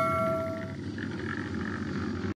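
The tail of a notification-bell sound effect: a bright chime ringing out and fading away within the first second, leaving a low, steady background rumble.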